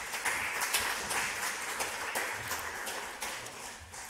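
Audience applauding, a dense patter of many hands clapping that dies away near the end.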